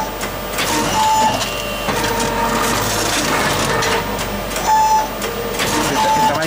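Automatic robotic book scanner turning the pages of an old book: its page-turning arm's motors whir in short steady whines, about a second in and again near five seconds, with small mechanical clicks over a constant hiss of the air blower and suction that lift and separate each page.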